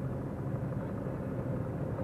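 Car driving at road speed, heard from inside the cabin: a steady low engine and road hum.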